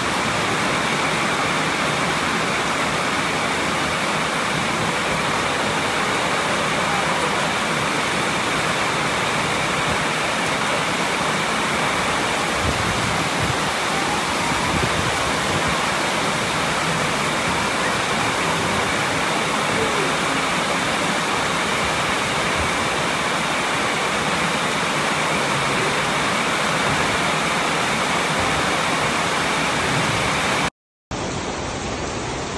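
Heavy rain and floodwater rushing through a street: a steady, loud, unbroken rush of water.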